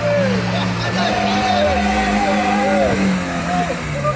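Small car's engine running steadily at low revs, with people yelling loudly over it.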